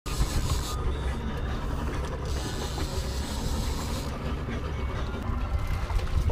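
Conventional trolling reel being cranked under load while fighting a fish, a steady mechanical ratcheting, over a constant low rumble.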